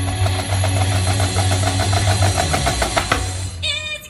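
Several marching snare drums played together in rapid, even strokes over a steady low backing track. The drumming breaks off about three and a half seconds in.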